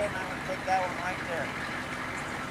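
Steady engine and cabin noise of a tour bus, heard from inside, with a couple of short bits of voice.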